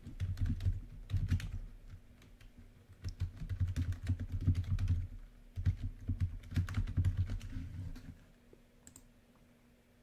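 Typing on a computer keyboard in quick runs of keystrokes, stopping about eight seconds in, followed by a single click near the end.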